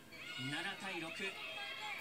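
Speech only: a voice talking quietly, with no other sound standing out.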